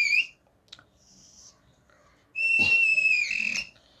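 A marker squeaking on a whiteboard as strokes are drawn: a high, steady squeal that stops just after the start, a faint scratch about a second in, then a second squeal lasting about a second and a half near the end.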